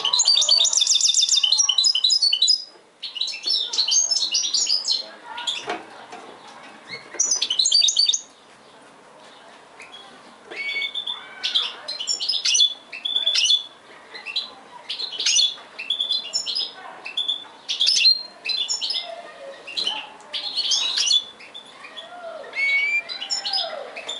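Goldfinch hybrid (mixto) singing: fast twittering phrases in bursts, loudest in a long run over the first few seconds, then a short lull and frequent short phrases from about ten seconds in.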